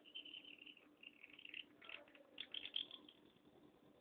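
Reed pen (qalam) nib scratching faintly across paper in a few short strokes as ink lines are drawn.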